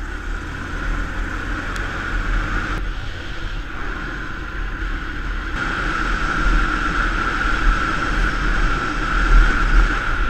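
Motorbike on the move: steady engine drone mixed with wind rush and low wind buffeting on the microphone. The noise changes abruptly about three and five and a half seconds in.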